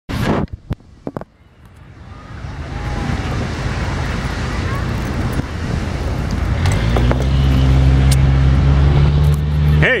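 A few sharp clicks at the start, then a rising rush of outdoor noise. About seven seconds in, a steady low engine drone sets in and stays.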